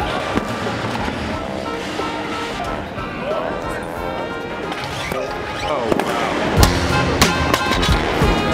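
A loaded barbell with rubber bumper plates is dropped onto a lifting platform about three-quarters of the way in. It lands with one loud bang and bounces with a few smaller knocks, over steady voices and music in a large hall.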